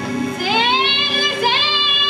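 Music with a high voice singing a slow melody that rises into held, wavering notes, over a steady sustained tone underneath.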